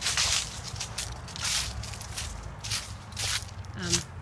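Footsteps of a person walking, a step about every half-second to second, over a steady low rumble.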